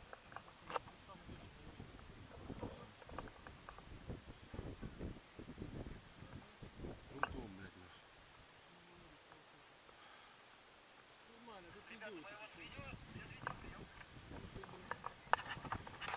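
Faint background voices and low wind rumble on a body-mounted camera's microphone, with scattered clicks and rustles as the harness and camera are moved. The voices grow louder near the end.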